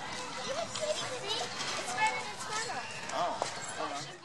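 Background voices of children and other people chattering and calling out over one another, no single speaker clear.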